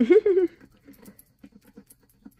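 Fingernail scratching the coating off a paper scratch-off card in quick, repeated short strokes, about four or five a second, after a brief hum of voice at the start.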